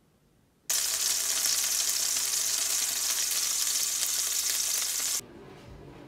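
Kimchi pancakes sizzling as they fry in oil: a steady hiss that cuts in abruptly about a second in and cuts off abruptly some four seconds later.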